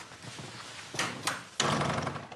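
A door latch clicking twice about a second in, then a sudden louder rush of noise as the door is opened and people shift on the sofa.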